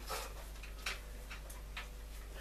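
Quiet room tone in a pause: a low, steady hum with four or five faint, irregular clicks.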